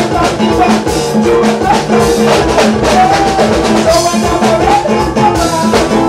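Live band music played loud through a stage sound system: a steady, evenly repeating drum beat with keyboards and wavering melody lines over it.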